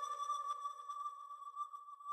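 A faint, steady synth note held alone in a quiet break of a reggaeton song, fading slowly, with no beat or vocals.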